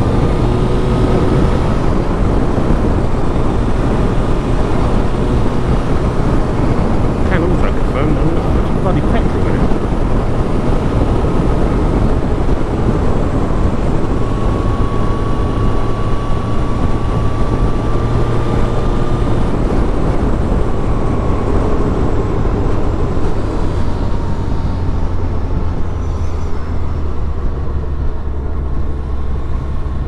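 1999 Suzuki Hayabusa's inline-four engine running at a steady cruise under heavy wind rush on the bike-mounted microphone, with the engine note settling lower near the end.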